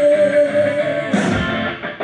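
Live rock band playing, loud. A female singer holds one long note into the microphone that ends about halfway through, and electric guitar and drums carry on after it.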